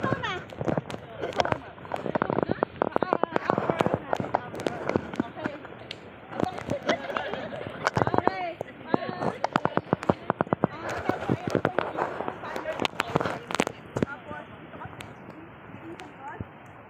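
Several people's voices talking, with quick runs of sharp clicks or pops through much of it.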